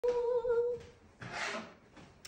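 A woman humming one steady high note for under a second, followed by a short hiss about a second and a half in.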